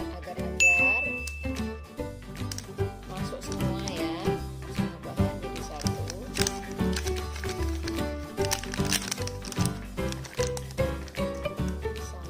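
Background music with a steady run of melodic notes; a single bright ding rings about half a second in.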